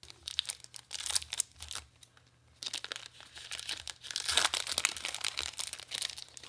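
Foil wrapper of a Magic: The Gathering draft booster pack crinkling as it is handled and torn open, in two spells of crackling with a short lull about two seconds in.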